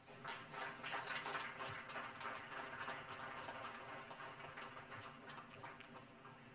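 Faint audience applause: many hands clapping, densest in the first second or two and then thinning out and dying away toward the end.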